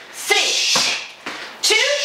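Two kicks landing on Thai pads about a second and a half apart, each strike followed by a woman counting the kicks down aloud.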